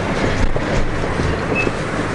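Footsteps crunching on a sandy dirt road, with a steady low rumble on the microphone.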